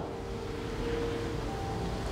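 Soft background music with a few faint held notes over a steady hiss of room noise.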